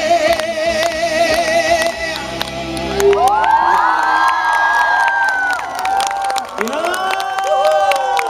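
Music with a held, wavering sung note that fades out in the first two seconds, then a crowd of fans screaming and cheering from about three seconds in, many high voices rising and holding at once, easing briefly and swelling again near the end.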